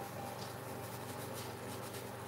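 Faint scratching of a bristle brush being dry-brushed over a canvas, over a steady low hum.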